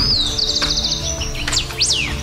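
A bird singing: a rapid high trill, then two quick high whistles that sweep up and down near the end, over faint fading music.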